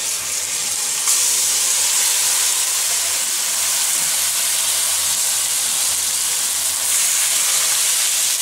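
Jujubes dropped into hot spiced oil in a wok, sizzling loudly with a steady hiss that gets louder about a second in as the fruit hits the oil.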